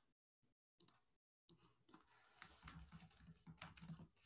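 Faint computer keyboard typing: a few scattered clicks, then a steady run of keystrokes from about a second and a half in.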